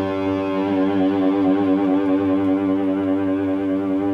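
Electric guitar holding one long sustained note, with vibrato that sets in about half a second in and makes the pitch waver.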